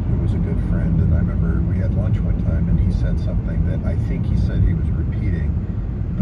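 Car driving on a road: steady low road and engine rumble heard from inside the car, with a faint voice talking over it.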